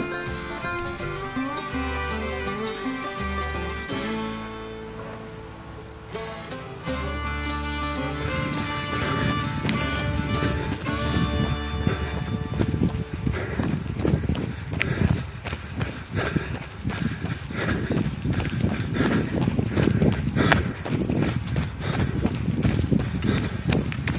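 Background music for about the first twelve seconds. It then gives way to a runner's footfalls on a trail, in a quick, steady rhythm.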